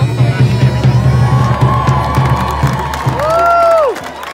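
Bagpipes playing a tune over their steady low drone, with a drum beating along. Near the end a long held note swells and then falls away.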